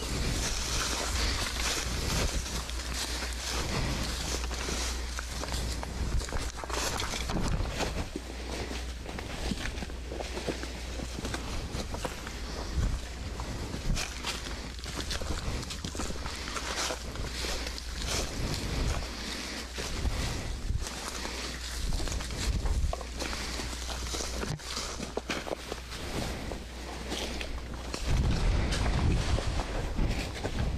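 Footsteps on dry leaf litter and brush, with rustling of vegetation as several people walk through undergrowth, the steps coming irregularly. A low rumble of wind on the microphone runs underneath, louder near the end.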